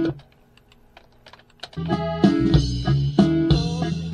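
A few sharp computer keyboard or mouse clicks in a quiet stretch, then about two seconds in, playback of a norteño arrangement built from drum loops starts: band music with a heavy bass and a steady beat.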